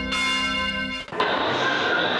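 A short station-ident jingle: a held, bell-like musical chord that breaks off suddenly about a second in, after which a loud, even rush of noise takes over.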